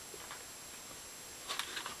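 Quiet room tone, with a few faint soft clicks near the end.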